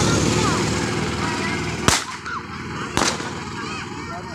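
Loud music with a beat fades out over the first two seconds, then two sharp bangs go off about a second apart, each with a short ring after it.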